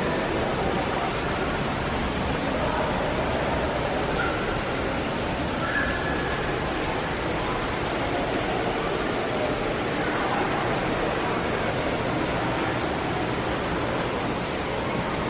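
Steady rushing, hiss-like ambience of an indoor desert exhibit hall, with a few faint short tones now and then.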